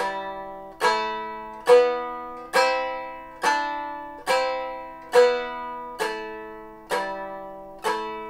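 Germanic round lyre, six gut-free strings tuned in G, strummed with a plectrum in the block-and-strum technique: fingers of the left hand mute the unwanted strings while the plectrum sweeps across them all, sounding a major chord. About ten strums come just under a second apart, each ringing and then fading, with the chord stepping up and back down the scale.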